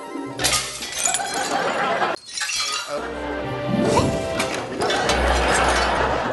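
Light sitcom-style music with clinking, clattering and shattering dishes and glass over it.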